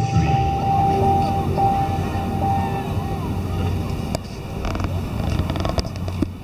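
Loudspeaker soundtrack of a projection-mapping light show: a low, steady drone with a held higher tone over it during the first half, then a little quieter.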